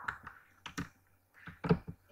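Computer keyboard keystrokes: a few separate, irregular clicks, the loudest shortly before the end.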